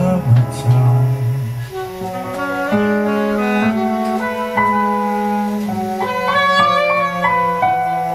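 Live small-band jazz instrumental passage: saxophones play sustained melody lines in harmony over upright double bass and keyboard, with no voice.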